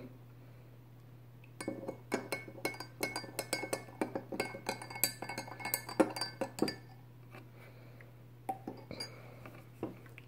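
Utensils clinking and tapping against a glass mixing bowl as thick slime is stirred: a quick run of light clinks for about five seconds, then only a couple of faint ones near the end.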